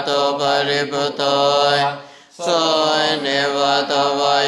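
Buddhist chanting in Pali: one voice reciting on a steady, near-monotone pitch with drawn-out syllables. It breaks off briefly for a breath about two seconds in, then carries on.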